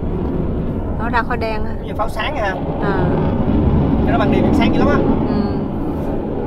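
Steady low rumble of a car moving along the road, road and wind noise, with people's voices talking over it several times.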